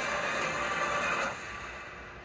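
Movie-trailer soundtrack: a dense, steady wash of score and sound effects that drops in level about a second and a half in.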